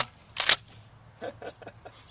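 A short scraping burst about half a second in, then a few faint clicks: a 12-gauge shotgun being handled as it is readied to fire.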